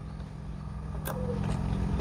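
Motor vehicle engine humming steadily and growing louder, with a single sharp click about a second in.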